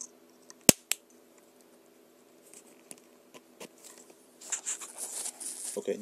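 A sharp snap about a second in, then a lighter click, as a battery lead is plugged into the e-bike motor controller, over a faint steady hum. Scratchy rustling of wires and connectors being handled follows near the end.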